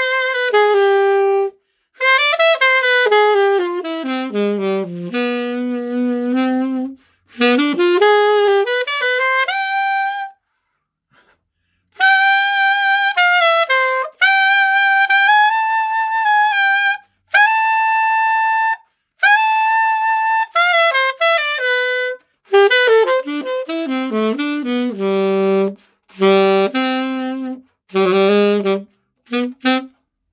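Glory alto saxophone played solo and unaccompanied: quick runs up and down, a short pause about ten seconds in, then several long held notes, and fast broken runs near the end.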